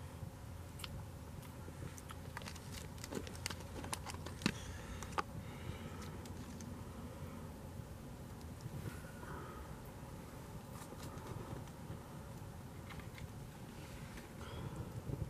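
Faint scattered clicks and scrapes of a knife and fork on a plate as steak is cut and eaten, mostly in the first five seconds or so, over a low steady background.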